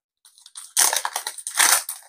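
Foil wrapper of a Digimon Card Game Next Adventure booster pack being torn open and crumpled by hand. It makes a dense, irregular crinkling and crackling that starts about three-quarters of a second in.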